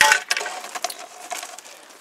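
A long vinyl siding panel being handled and positioned against a wall, with a sharp plastic clatter at the start followed by lighter rattles and clicks as the thin panel flexes.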